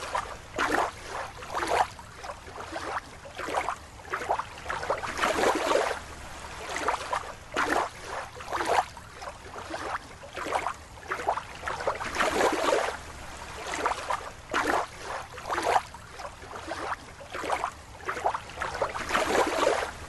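Water splashing and sloshing in short, irregular bursts throughout.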